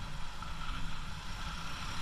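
Bajaj Pulsar 220 motorcycle's single-cylinder engine running steadily while cruising, mixed with wind rush on the camera microphone.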